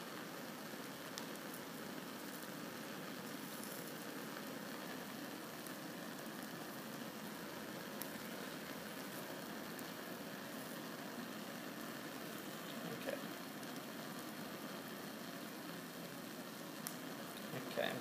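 Steady hiss of a Bunsen burner flame heating an evaporating basin of salt water that is boiling down nearly dry, with sizzling and a few faint ticks as the salt begins to spit.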